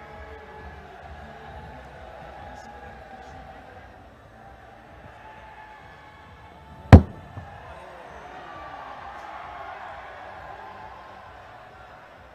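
Low stadium ambience with a faint crowd murmur, broken about seven seconds in by one sharp crack of a cricket bat striking the ball.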